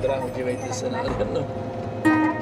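Inside a moving bus: steady low rumble of the engine and tyres, with a faint steady hum and faint voices over it.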